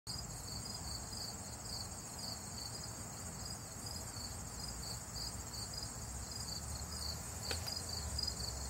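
Insects singing outdoors: a steady high-pitched trill with a second insect's chirp pulsing about two to three times a second, over a low background rumble. A faint tap near the end.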